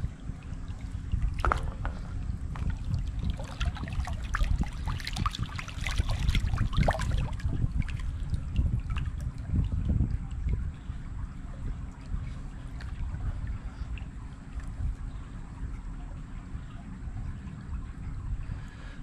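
Shallow running water splashing and trickling as a gloved hand stirs and lifts stones and gravel on a creek bed, with knocks of stone on stone. The splashes come thickest in the first half and thin out later, over a steady low rumble of breeze on the microphone.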